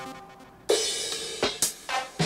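Single drum-machine and synth sounds from the Groove Rider GR-16 iPad groovebox app, triggered one at a time by tapping its pads. A synth note fades out first, then comes a noisy hit with a short held tone under a second in, and a few short, sharp percussion hits near the end.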